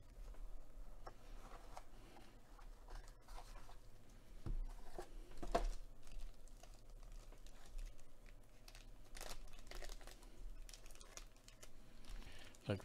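Black plastic sports-card pack wrapper crinkling and rustling as it is handled and opened, in irregular crackles that grow louder about halfway through and again near the end.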